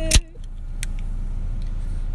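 Steady low hum inside a parked car's cabin, with a loud sharp knock about a fifth of a second in and a single sharp click a little before the middle.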